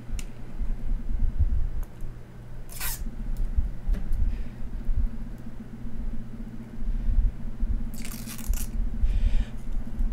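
Thin plastic protective film being peeled off a motherboard's aluminium heatsinks, with short crinkles about three seconds in and again near the end, over low thumps of hands handling the board and a steady hum.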